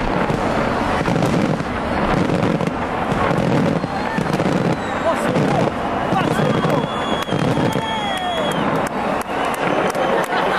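A large fireworks display bursting and crackling over a big crowd, whose voices run underneath. Sharp cracks come thick and fast in the last few seconds.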